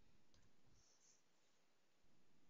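Near silence: faint room tone with a soft computer mouse click about a third of a second in.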